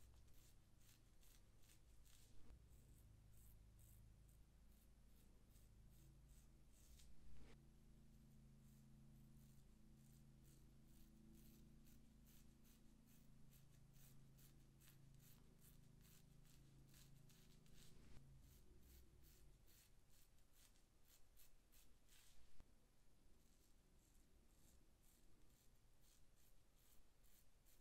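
Faint, short scraping strokes of a Bevel metal safety razor cutting through shaving lather and long hair on the scalp, one after another in quick, uneven succession, with a few louder strokes along the way.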